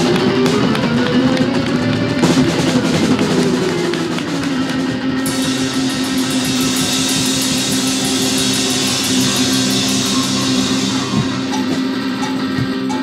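Live rock band playing electric guitar and drum kit. About five seconds in, fast, even cymbal strokes join over a held guitar note.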